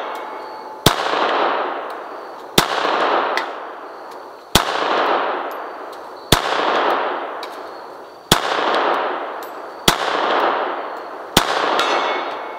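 Beretta 81 pistol in .32 ACP fired seven times at a slow, even pace, a shot about every two seconds. Each shot is followed by a long echo that fades away, and a faint distant tick follows a couple of the shots.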